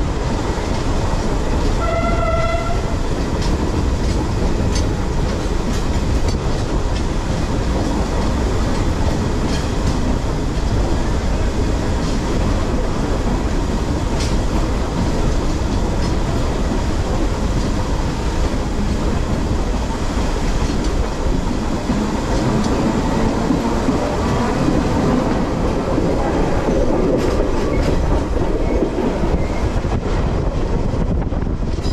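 Electric commuter train running, heard from on board: a steady rumble of wheels on the rails, with a short horn blast about two seconds in and a rising whine near the end as the train gathers speed.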